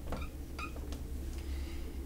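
Dry-erase marker squeaking on a whiteboard as a capital letter is written. There are a few short, high-pitched squeaks.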